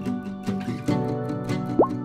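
Upbeat background music with a steady beat. Near the end comes a short rising 'bloop' sound effect.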